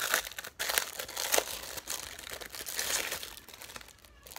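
Crinkly plastic packaging rustling and crackling as it is handled and pulled open, in irregular crackles that are loudest in the first second and a half.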